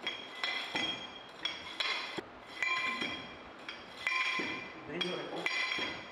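2.6 kg drop rammer sliding down its guide rod and striking, compacting moist soil in a metal permeameter mould: a steady series of sharp metallic clinks, about two a second, each ringing briefly.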